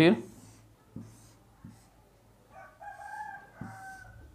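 A rooster crowing once in the background, a call of about a second and a half that starts past the middle. Under it, faint repeated scratches of a pen stroking shading lines on paper, with a few light taps.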